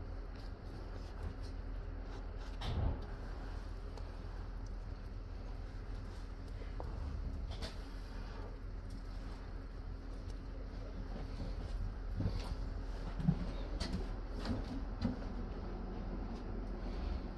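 Steady low hum and rumble inside a railway passenger coach, with a few scattered knocks and clunks: one about three seconds in, and several more near the end.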